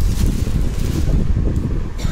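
Loud, uneven low rumble on the microphone.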